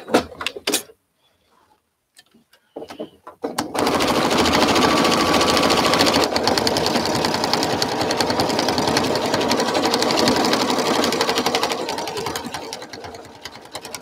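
Domestic sewing machine free-motion stitching with the feed dogs lowered, the fabric moved by hand: after a few brief clicks, it runs fast about four seconds in, a rapid, even chatter of needle strokes, and slows and fades near the end.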